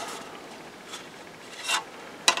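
Styrene model-kit parts and their clear plastic bags rubbing and rustling as they are handled, with a brief louder rustle near the end.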